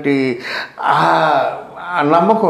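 A man speaking, with a breathy gasp about a second in.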